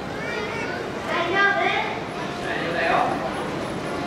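A person's voice speaking in short phrases over steady crowd background noise.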